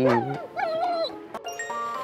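A beagle whines briefly with a wavering pitch, over background music that ends in chime-like notes.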